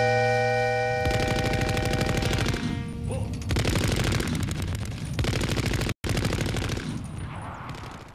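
A held electric guitar chord rings out and dies away while rapid machine-gun fire starts about a second in and continues, broken briefly near the end before fading out.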